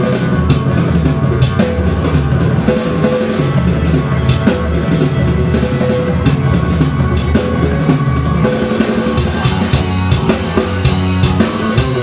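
Rock music with a drum kit keeping a steady beat over low bass notes that change pitch.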